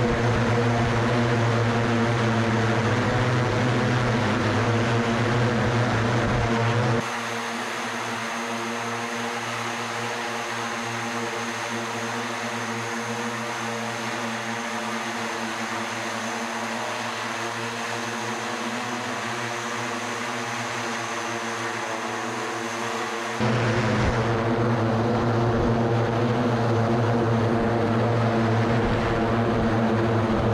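Eight electric propellers of the SkyDrive SD-03 flying car running in hover: a steady, loud propeller hum made of several stacked pitched tones. It is heavy and close from the cockpit at first and again for the last several seconds; in the middle it is heard from the ground, quieter and thinner, with a faint high whine.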